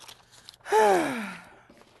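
A woman's long audible sigh, breathy and voiced, starting strong about two-thirds of a second in and falling in pitch as it fades.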